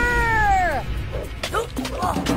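A single long, high, meow-like cry that slides down in pitch and fades out within about a second, over background music.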